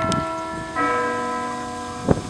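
Bells ringing, each stroke with several clear tones that slowly fade; a new bell is struck a little under a second in, over the ring of the previous one.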